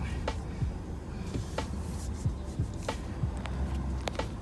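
Low, steady rumble of a Ford F-250's 6.7 Power Stroke diesel idling, heard from inside the cab, with a faint click about every second and a bit.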